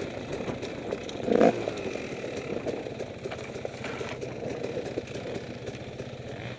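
Enduro motorcycle engine running steadily at low revs as the bike rolls along a rough dirt track, with rattles and small knocks from the bike over the ground. A brief louder burst comes about one and a half seconds in.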